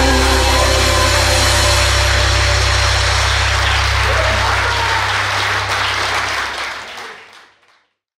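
A church congregation applauding after a sung song ends, over a steady low held note. It all fades out to silence near the end.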